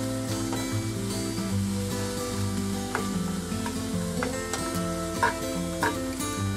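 Chopped onion and carrot sizzling in hot oil in a pan, stirred with a spatula, with a few light scrapes of the spatula against the pan.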